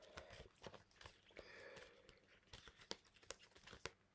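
Near silence with faint handling noise: scattered light clicks and a soft rustle of paper and plastic as a cash-stuffing wallet is got out, with a slightly sharper click a little past three seconds in.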